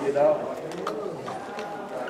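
Several people's voices in overlapping conversation, with one louder voice briefly about a quarter second in.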